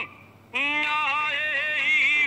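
A single voice singing a jingle, coming in about half a second in with a held note whose pitch wavers and bends.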